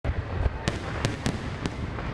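Aerial fireworks display: a run of sharp bangs, about six in two seconds, over a steady low rumble of bursting shells.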